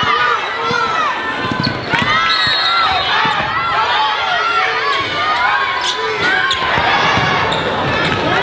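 Game sound from a basketball court: a basketball being dribbled on the hardwood floor, with short high squeaks of sneakers on the court and voices in the gym.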